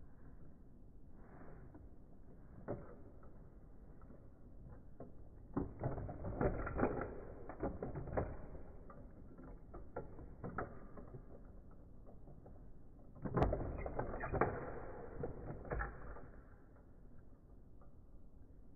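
Plastic toy parts clicking and clattering: one click about three seconds in, then two bursts of rapid clicks and knocks, the second starting with the loudest knock.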